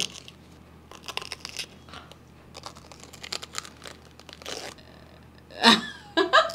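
Crisp crunching and chewing of raw cabbage bitten straight off a whole head: a scatter of short, sharp crunches, with a short loud burst of laughter near the end.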